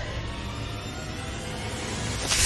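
Low, steady rumbling drone from a horror film trailer's sound design, holding tension under a wordless shot.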